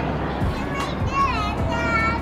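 Children's voices calling out with high, sliding pitches over a steady background of crowd hubbub, with music underneath.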